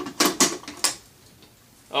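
An airsoft PKM machine gun being handled, its parts giving a few sharp metallic clicks and clacks in the first second, then quiet.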